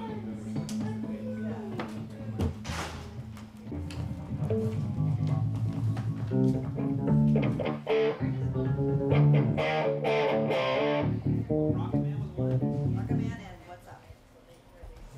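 Band instruments, electric guitar and bass guitar, playing a passage at a rehearsal, with a held low note at first and then changing notes, cutting off shortly before the end.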